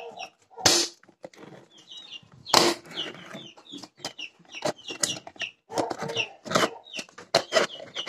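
Young chicks peeping in short, scattered high calls, over knocks and scrapes from a plastic container being handled. The loudest sounds are two sharp bumps, one just under a second in and one about two and a half seconds in.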